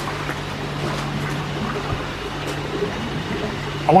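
Steady running water with a low, constant hum beneath it.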